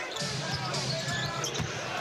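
A basketball being dribbled on a hardwood court during live play, with a steady arena crowd murmur behind it.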